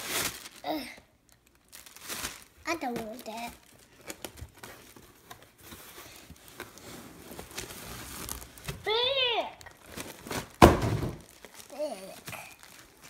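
Cardboard box flaps and a doll's plastic-windowed packaging rustling and crinkling as a small child handles them, with a louder sudden crackle near the end. A child's short vocal sounds break in a few times, one drawn out and rising then falling about nine seconds in.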